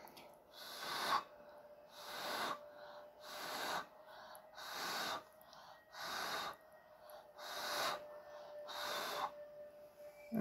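Repeated puffs of breath blown by mouth across wet acrylic paint, about one a second, each a short hiss. They push a bloom-style pour outward from its centre.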